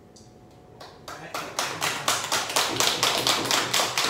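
A small audience applauding at the end of a live jazz piece: a quiet first second, then clapping that starts about a second in and quickly builds to steady applause.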